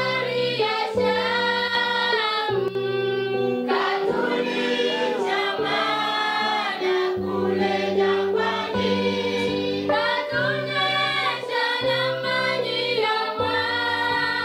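Church choir of mostly women's voices with some men singing a gospel song together in harmony, holding long notes that change every second or so.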